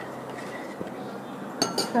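Juice being stirred in a stainless steel pot, then two sharp metallic clinks against the pot near the end, a fraction of a second apart, as the stirring stops.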